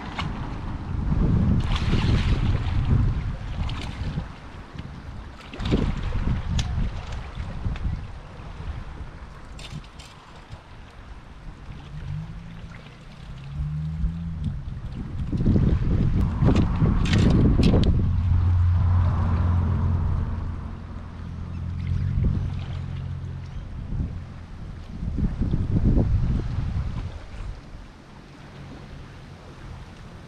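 Wind buffeting the camera microphone in gusts, rising and falling, with a few short knocks and clicks.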